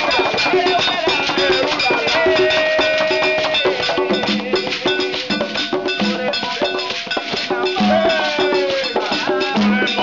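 Santería tambor music for Obatala: hand drums playing a repeating pattern with beaded gourd shekeres shaking, under a voice singing long held lines that fall in pitch.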